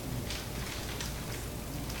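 Steady hiss of room noise in a meeting hall, with a few faint, brief rustles and taps.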